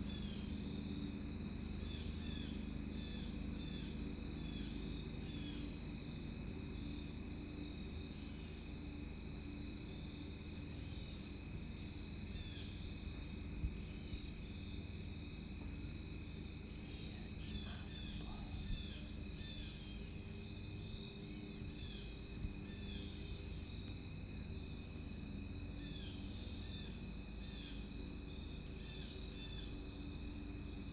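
Steady outdoor insect chorus of crickets and other insects trilling without a break, with runs of short high chirps repeating every half second or so. Three brief sharp clicks come about halfway through.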